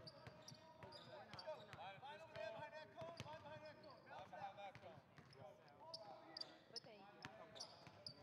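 Faint gym ambience of a basketball practice: basketballs bouncing on a hardwood court in irregular sharp knocks, with players' voices talking in the background.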